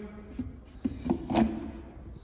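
Engine oil pouring out of an upturned plastic jug into an engine's oil filler neck, letting the last of it drain: quiet, with a few short irregular sounds.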